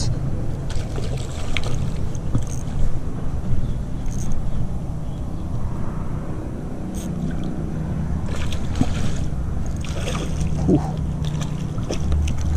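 Wind rumbling steadily on the microphone, with scattered clicks and rustles from an ultralight spinning reel and rod being worked while a hooked fish is played.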